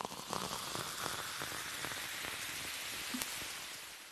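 Cola fizzing in a glass with ice: a steady hiss of popping bubbles, dotted with tiny crackles, beginning to fade near the end.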